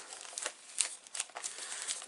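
Plastic and cellophane packaging of a card kit and die set crinkling and rustling as it is handled and gathered up, with a few light taps.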